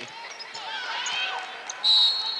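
Court noise of live basketball play with a ball bouncing on the hardwood. Near the end a referee's whistle starts a loud, steady blast, calling a foul.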